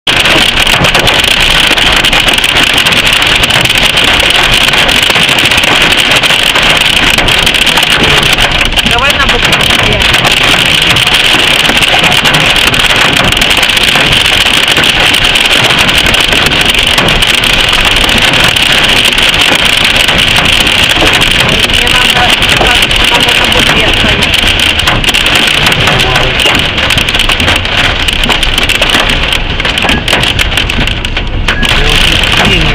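Hail hitting the car's roof and windshield, heard from inside the moving car as a loud, steady, dense noise.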